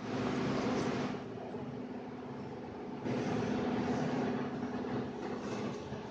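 A steady mechanical hum, with a rushing noise that swells twice: for about a second at the start and again around three seconds in.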